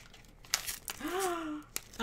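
A few faint crinkles and clicks of a plastic candy wrapper being handled, with a short, soft vocal sound in the middle that rises and then falls in pitch.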